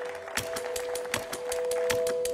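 Closing music: a steady held chord with a quick run of sharp clicks over it, several a second.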